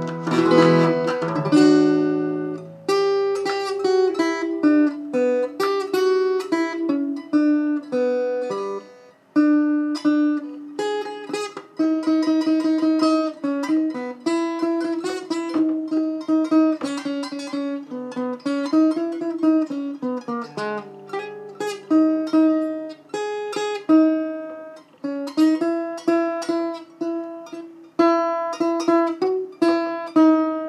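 Harley Benton travel acoustic guitar with heavy 13-gauge strings, played fingerstyle. A strummed chord rings out at the start, then a plucked single-note melody follows, with a few notes sliding or bending in pitch about two-thirds of the way through.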